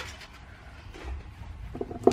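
Faint handling noise from rolls of washi tape on a cardboard tube being turned over in the hands.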